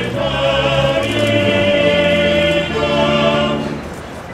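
Choir singing a slow sacred piece in long held chords, with a high note sustained for about a second in the middle before the sound eases off near the end.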